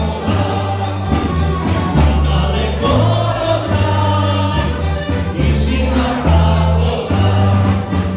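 A dance band playing a lively dance tune, with singing over a steady beat and a strong bass line.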